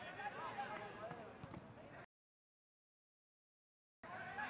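Faint, distant voices of footballers calling on the pitch for about two seconds, then the sound cuts off abruptly to dead silence.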